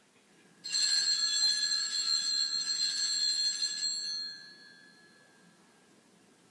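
Altar bells (a set of Sanctus bells) shaken in a continuous jangling ring for about three seconds, then dying away. It is the ringing at the consecration of the Mass.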